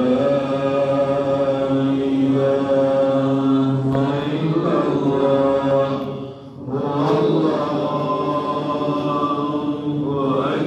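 A male voice chanting an Islamic religious recitation in long, sustained melodic notes, with two short breaks partway through.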